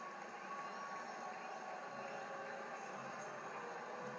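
Steady arena crowd noise from a hockey broadcast, heard through a television's speaker.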